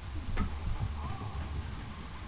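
A dog moving off quickly across a carpeted floor, with one sharp click about half a second in over a low rumble.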